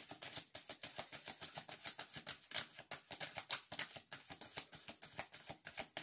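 Tarot cards being shuffled by hand: a quick, steady run of small card slaps and clicks, about eight to ten a second, that stops abruptly at the end.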